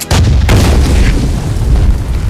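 Landmine explosion: a sudden deep boom right at the start, a second sharp hit about half a second in, then a heavy low rumble.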